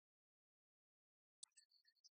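Near silence, then about three-quarters of the way in a sharp click followed by faint, high ringing tones that break off and come back, the start of a cartoon sound effect or jingle.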